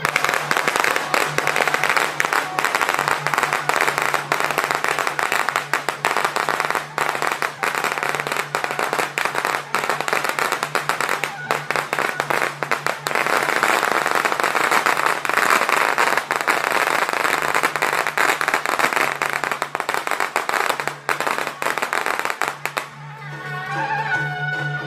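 A long string of firecrackers going off in a dense, rapid crackle of bangs, stopping about a second before the end. A steady droning note of music runs underneath.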